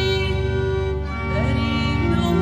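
Church hymn: a singing voice over sustained instrumental chords.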